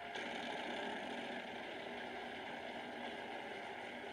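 Wheel of Fortune prize wheel spinning, its pegs clicking rapidly past the pointer, under studio audience noise. The sound is thin and boxy, played through a phone speaker.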